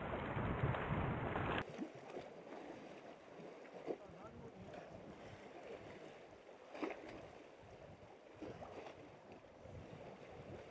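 Wind rumbling on the microphone for about a second and a half, cutting off suddenly. Then a faint, steady outdoor hush of wind and sea with a few brief faint sounds.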